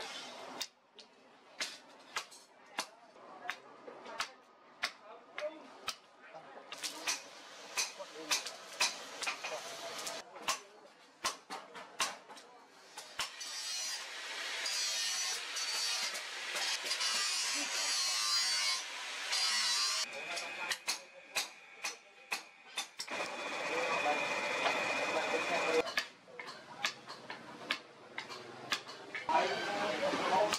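Hammer blows on hot steel at the anvil, repeated sharp strikes about twice a second as a heavy machete is forged. A steady rushing noise runs under the blows for several seconds in the middle, and a second steady noise with a high whine follows later.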